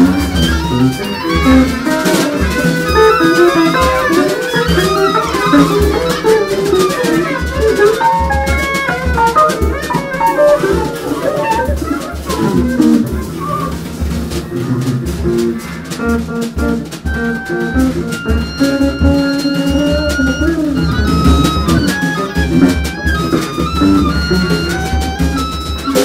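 Small jazz group playing: bass clarinet and oboe over electric guitar and a drum kit, with busy drum hits throughout. Long held woodwind notes come in over the last few seconds.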